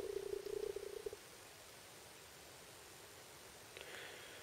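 A faint, rough buzzing hum for about the first second, then near-silent room tone with a faint tick near the end.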